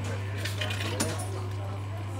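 Metallic clicks and clinks from the works of an old coin-operated fortune teller machine as it runs its cycle, the sharpest click about a second in, over a steady low hum.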